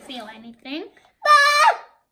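Children's voices: brief chatter, then a loud, high-pitched vocal exclamation held for about half a second, a little past a second in.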